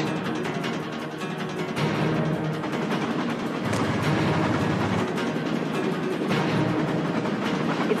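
Action-film soundtrack: a driving orchestral score with heavy timpani-like drums over a dense, steady bed of action sound effects.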